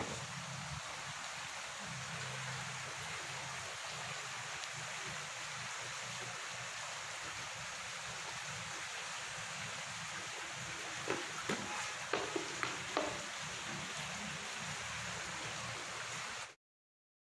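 Steady outdoor background hiss with no clear source of its own. A handful of short sharp clicks or snaps come about eleven to thirteen seconds in.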